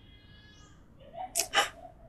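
A crying woman sobbing: a quick run of three short, sharp breaths about halfway through.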